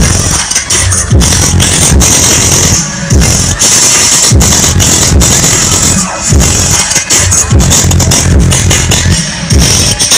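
Very loud electronic dance music with a heavy bass beat, blaring from a large DJ loudspeaker stack. The beat briefly drops out about every three seconds.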